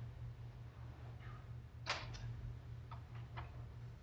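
Plastic clicks from a brick-built LEGO toy gun being handled: one sharp click about two seconds in, a second just after, then three lighter clicks. A steady low hum runs underneath.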